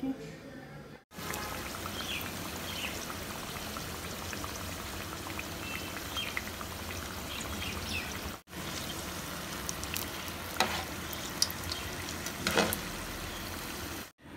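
Wrapped chicken-vegetable rolls deep-frying in hot oil in a pan: steady sizzling with crackles and small pops, a few louder pops near the end. The sound starts about a second in and breaks off briefly once partway through.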